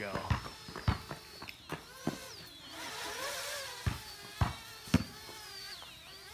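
Parrot Bebop 2 quadcopter flying overhead, the whine of its four motors rising and falling in pitch as it speeds about in sport mode. Several short sharp clicks are heard over it.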